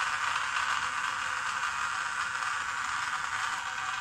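Small 3.5 RPM DC gear motor driving a model conveyor belt, running with a steady hum.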